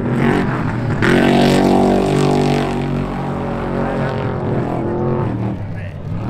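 Two trophy trucks' engines revving hard as the trucks race past side by side. The pitch climbs about a second in, then holds at a high, steady run and eases off slightly toward the end.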